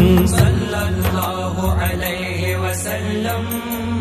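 Arabic naat music: chanted voices holding long notes over a low steady drone, with light ticking percussion, the level slowly dropping.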